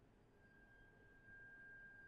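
Near silence, with a faint steady high tone that comes in about half a second in and holds.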